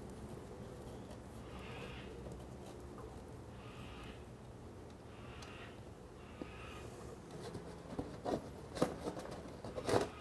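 Hand-removing the drain plug from a Moto Guzzi Breva 750's bevel drive as its oil starts draining into a drain container, with quiet handling sounds. A few sharp clicks and knocks near the end come from the plug and container being handled. Faint short high calls repeat about every two seconds in the background.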